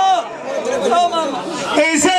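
A male folk singer's voice through a microphone and loudspeaker: a held sung note of a Punjabi dhola ends at the start, then comes a short, softer stretch of speech-like voice with crowd chatter, and a new held note begins near the end.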